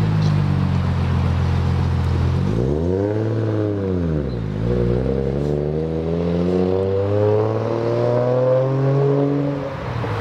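RB25 straight-six engine in a swapped car, idling and then revved once, the note rising and falling over about two seconds. It then pulls away, its note climbing steadily for about five seconds as the car accelerates. A smooth tone the onlookers call very nice.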